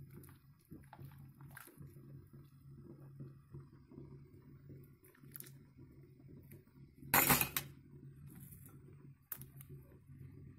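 Metal ladle clinking and scraping faintly in an enamel soup pot as soup is ladled into a bowl, with one louder clatter about seven seconds in. A low steady hum runs underneath.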